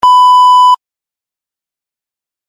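A single loud electronic beep, one steady tone lasting about three-quarters of a second and cutting off sharply. It is the cue that answering time has begun in an interpreting test.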